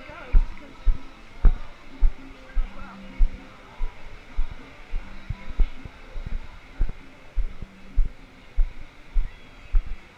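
Walking footsteps picked up as dull, regular low thumps through a body-worn camera, a little under two steps a second, with faint voices and music behind.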